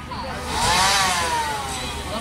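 An engine revving up and falling back again, its pitch rising to a peak about a second in and then sliding down.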